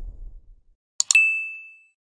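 Notification-bell sound effect of a subscribe animation: two quick clicks about a second in, then a single high ding that rings out and fades within a second. A low rumble dies away at the start.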